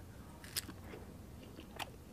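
A person biting into a peeled prickly pear and chewing it quietly, with two faint sharp clicks, one about half a second in and one near the end.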